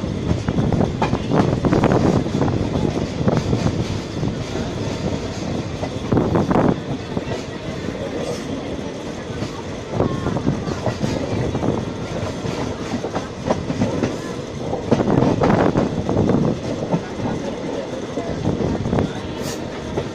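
Passenger coach rolling along the track, heard from its open doorway: a steady rumble with the wheels clattering over rail joints and points, louder in a few stretches.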